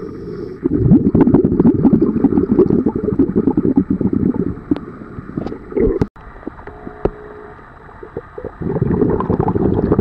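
Underwater sound beside a scuba diver: a dense, low bubbling rumble with crackles, typical of exhaled air bubbling past the camera. It drops away for about three seconds past the middle and returns loudly near the end.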